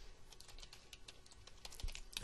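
Faint, quick run of keystrokes on a computer keyboard as a password is typed.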